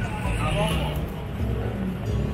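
Busy street traffic noise: a steady low rumble of cars and motorbikes, with indistinct voices of passers-by, some of it in the first second.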